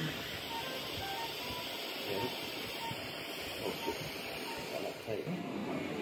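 Faint procedure-room background: a steady low hiss and hum, with quiet distant voices and a few short, soft electronic beeps.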